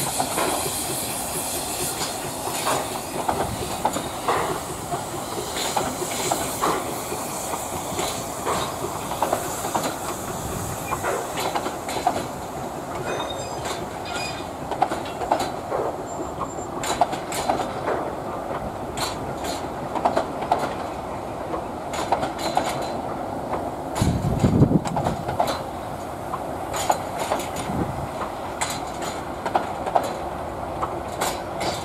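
Narrow-gauge passenger coaches rolling past over a low bridge, their wheels clattering in an irregular run of clicks and knocks over the rail joints. A brief low rumble comes about three-quarters of the way through.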